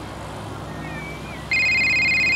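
Cartoon shell-shaped phone ringing while placing a call: a steady electronic two-tone trill about a second long that starts about one and a half seconds in. It plays over a low steady hum.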